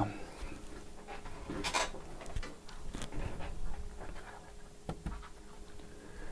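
Scattered light clicks and knocks, with a brief scrape a little under two seconds in, as the bottom cover of a Huawei MateBook D14 laptop is lifted off and handled.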